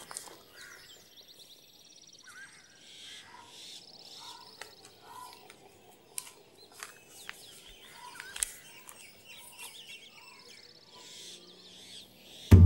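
Small birds chirping and trilling over faint outdoor ambience, with a few sharp clicks scattered through; the loudest click comes about eight and a half seconds in.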